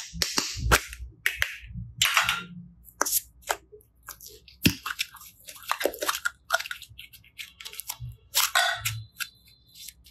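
A plastic modelling-clay tub being handled and opened, then its blue clay pulled out and worked in the fingers: irregular sharp clicks and short crackling rustles throughout.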